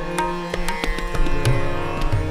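Hindustani khyal accompaniment in Raga Darbari: tabla strokes over a steady tanpura drone and harmonium. About a second and a half in, the bass drum of the tabla starts deep, bending booms.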